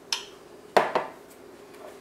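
Kitchenware being handled on a counter: a light tick, then two quick clinks a little under a second in.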